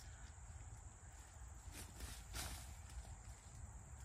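Faint crumbling and rustling of mushroom spawn being broken apart by hand, with a couple of soft scrapes about two seconds in, over a steady high insect drone.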